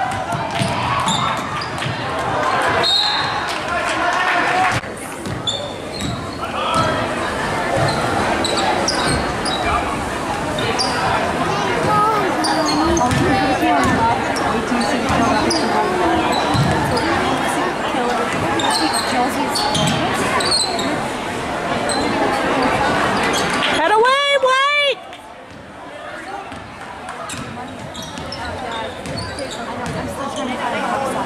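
Basketball gym noise: crowd chatter, sneakers squeaking on the hardwood and the ball bouncing during live play. About 24 seconds in a brief wavering pitched tone sounds, and the crowd noise then drops.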